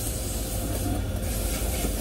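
Car wash vacuum hose running steadily: an even whooshing suction with a low rumble under it.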